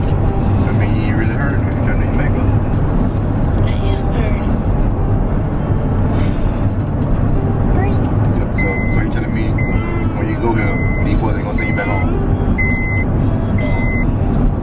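Steady low rumble of a car's engine and tyres, heard from inside the cabin while driving. From about halfway through, a short high electronic beep repeats about once a second.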